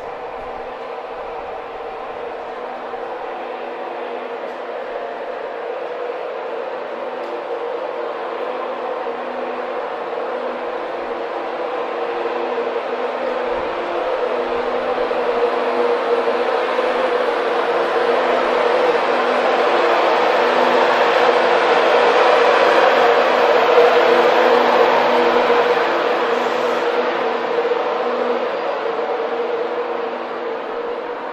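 Class 91 electric locomotive 91127 and its train of coaches passing, a steady hum of several even tones over rail noise that swells as the locomotive draws level about two-thirds of the way in, then fades as it moves away.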